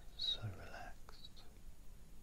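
A brief softly whispered word from a hypnotist's voice, lasting under a second, followed by a couple of faint ticks.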